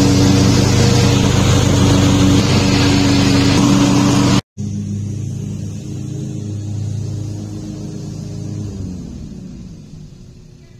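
A lawn mower engine running loudly and steadily close by. After a sudden cut a little over four seconds in, a riding mower's engine runs at a distance and winds down near the end.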